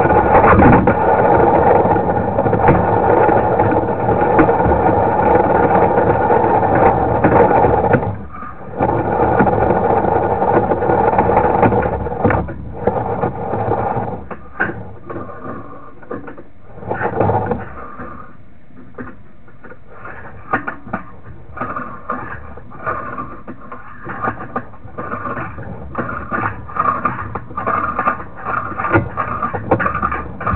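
Sewer inspection camera's push-rod reel and cable running steadily as the rod is fed fast down the drain line, a brief break near 8 s, then stopping about twelve seconds in. After that, irregular scrapes and clicks as the rod is fed slowly in short stop-start pushes.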